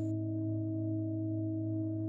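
Background music reduced to one sustained chord of steady tones, held without a beat.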